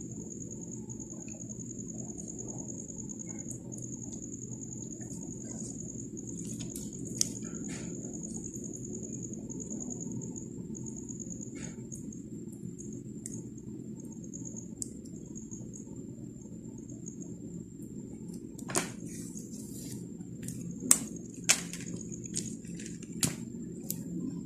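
Scattered sharp clicks of faux pearl and crystal beads knocking together as fishing line is threaded through them, a few coming close together near the end. Beneath them run a steady low hum and a faint high whine.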